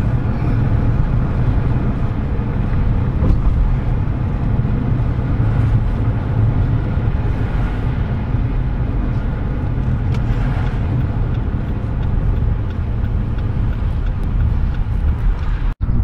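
Car driving at steady speed, heard from inside the cabin: a steady, loud low rumble of engine and tyre road noise.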